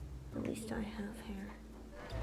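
Quiet, whispered speech over low, steady background tones.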